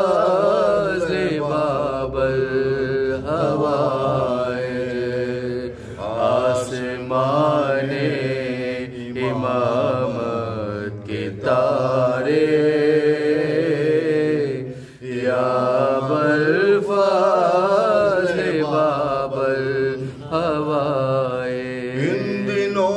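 A man chanting a devotional manqabat solo, holding long wavering, ornamented notes, with a brief break about fifteen seconds in.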